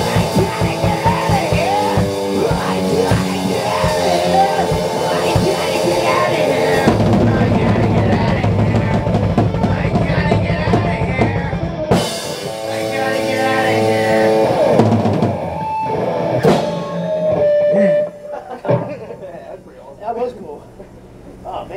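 Live punk/hardcore band playing loud in a rehearsal room: a drum kit with a driving kick drum under amplified instruments. The song stops suddenly about 18 seconds in.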